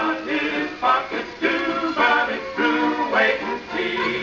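A children's song with an orchestra and male singers, playing from a yellow vinyl record on a turntable.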